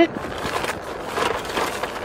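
A pause in speech with a steady, faint background hiss inside a car's cabin.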